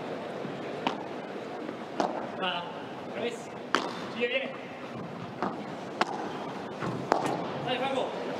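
Padel ball being struck by solid padel rackets and bouncing during a rally: about seven sharp pops at uneven intervals, roughly a second or so apart, over the steady murmur of an arena crowd.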